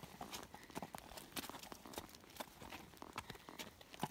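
Horse's hooves clopping at a walk on frozen, hard arena ground, heard as a string of faint, sharp clicks.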